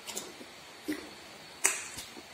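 Close-up eating sounds of food being eaten by hand: a few short, sharp smacks and clicks, the loudest about one and a half seconds in.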